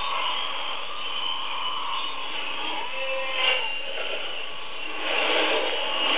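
Shortwave AM broadcast from PBS Xizang on 6025 kHz heard through a communications receiver: steady static and hiss, with the station's programme audio weak and fading underneath. The signal swells a little louder near the end.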